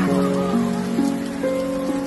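Steady rain falling, heard under background music of held notes that move to a new pitch about every half second.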